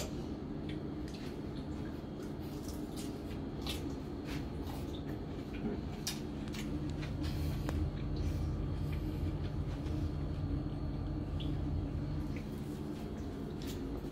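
Salad greens being tossed and stirred in a white ceramic bowl with serving utensils: soft rustling of leaves and scattered light clicks of the utensils against the bowl, over a steady low hum.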